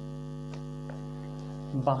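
Steady electrical mains hum, a buzz made of many even tones, with a man's voice starting again near the end.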